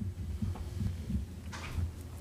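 Low, irregular rumble with soft thuds, picked up on the meeting-room microphones, and a faint hiss shortly before the end.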